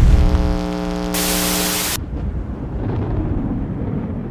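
Electronic sound design: a wash of static-like white noise over a held synth chord, both cutting off abruptly about two seconds in, leaving a low rumble.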